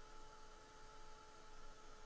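Faint, steady hum of a small handheld electric dryer held over the painting to dry wet watercolour paint.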